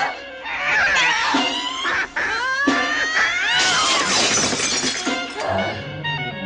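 Horror film soundtrack: shrill, rising and falling shrieks over frantic music, with a couple of sharp knocks and a dense, noisy crash-like burst past the middle.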